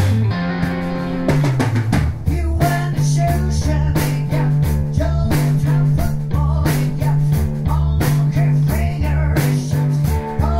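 Live rock band playing instrumental: electric guitar, electric bass and drum kit. The guitar and bass hold notes at first, and the drums come in about a second and a half in with a steady beat.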